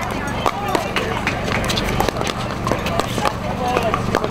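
Pickleball paddles hitting a hard plastic ball: a string of sharp pops at irregular intervals, some from the rally at the net and others from neighbouring courts, over people talking in the background.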